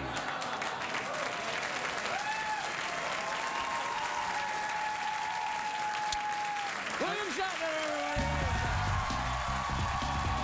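Studio audience applauding and cheering. About eight seconds in, music comes in under the applause with a heavy bass line.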